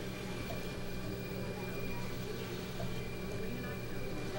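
Steady low hum with a faint thin high tone: background machine and room tone, with no distinct event.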